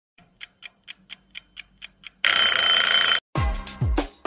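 Clock-like ticking, about four ticks a second, then a loud alarm bell rings for about a second. Near the end, music starts with a deep booming kick drum.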